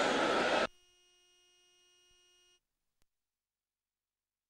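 A congregation's many voices at once, cut off abruptly under a second in. A faint, steady electronic tone follows for about two seconds, then there is a single soft click and silence.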